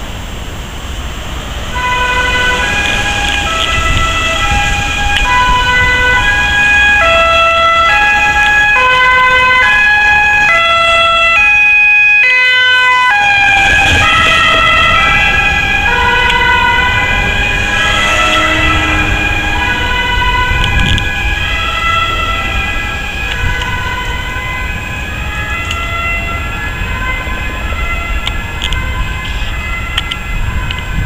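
Ambulance two-tone siren, alternating high and low notes, approaching and passing through city traffic. It comes in about two seconds in, is loudest around twelve seconds, drops in pitch as the vehicle goes past, then carries on a little fainter as it moves away. Traffic rumbles underneath.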